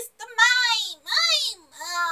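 A woman's high-pitched, sing-song vocalizing: three drawn-out cries that rise and fall in pitch, each under a second long, without words, made as an impression of a Pokémon's voice.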